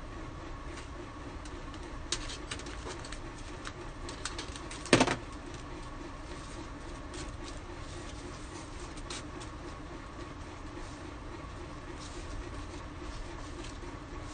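A steady low machine hum with a few light clicks and taps from hands working at a craft table, and one sharp knock about five seconds in.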